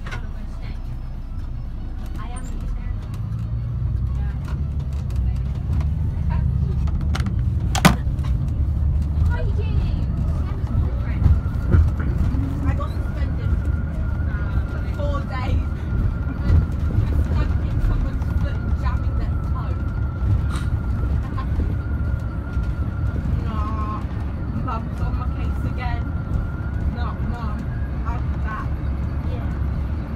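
Interior drive noise of a 2011 VDL Bova Futura coach on the move: a steady low engine and road rumble that grows louder a few seconds in. A sharp click sounds about eight seconds in, and a thin steady high whine runs through most of the second half.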